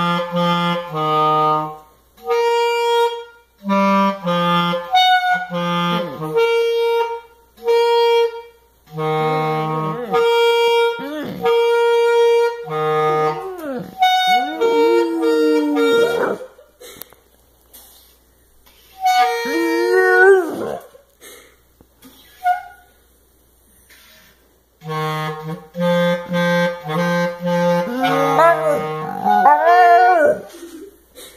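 A clarinet plays a tune of held, stepped notes for the first half. A dog then sings along to it, howling in long rising-and-falling wails three times: about halfway, a little later, and again over the clarinet near the end.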